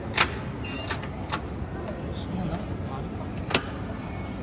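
Background noise of a showroom hall, with faint voices of other visitors and three short, sharp clicks or taps.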